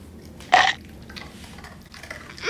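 A single short, loud burp about half a second in.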